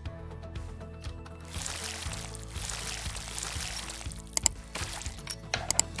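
Small LEGO plastic pieces being pried off with a brick separator and handled: a rustling, scraping stretch in the middle, then a few sharp plastic clicks near the end. Steady background music plays throughout.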